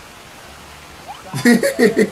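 Steady rushing background noise, then a voice calling out about two-thirds of the way in.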